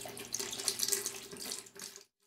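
Water sloshing and splashing in a plastic bucket as a metal rod is worked in it, washing out a black-powder rifle's fouling.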